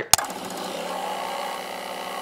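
A sharp click, then a steady, buzzy sustained tone with many overtones, laid over the closing logo card.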